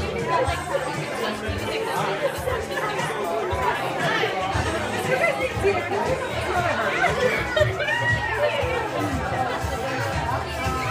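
Many voices chattering over one another, with music playing underneath.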